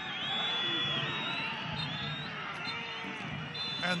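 Stadium crowd noise from a soccer match broadcast: many voices calling and shouting at once in a steady wash, with a few thin high whistle-like tones.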